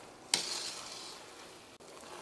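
A metal spatula stirring thick, sugary semolina (rava kesari) in a stainless steel pan. One sharp scrape about a third of a second in trails off into a soft hiss.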